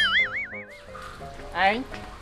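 Cartoon-style comedy sound effect, a 'boing': a pitched tone that starts sharply, wobbles up and down about five times a second and dies away within the first second, over steady background music.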